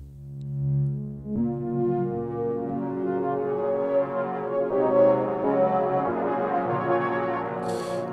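Arturia Prophet V3 software synthesizer playing sustained pad chords on its 'Hyper Flanger' preset. The chord changes about a second and a half in and again near five seconds.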